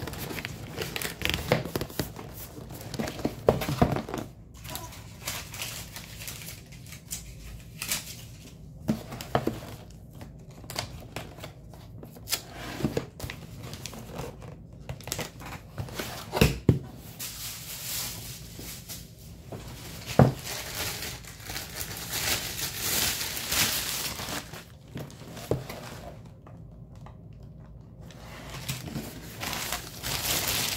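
Packing materials being handled: paper and plastic crinkling and rustling, with scattered knocks and taps from items set down on the table. The crinkling thickens for several seconds after the middle, drops away briefly, and returns near the end as pink tissue paper is handled.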